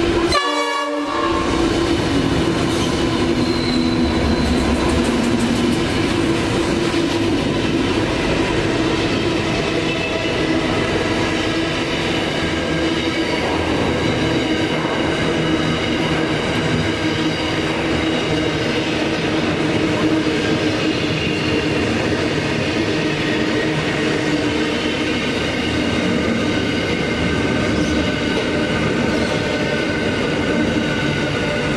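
Pacific National NR class diesel-electric locomotives hauling an intermodal container freight train past at speed. The locomotives go by first, then a long string of loaded container wagons rolls past, a loud, steady rumble of wheels on rail that keeps up for the whole time.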